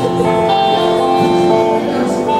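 Acoustic guitar playing on its own, a run of ringing notes that change every half second or so, with no voice.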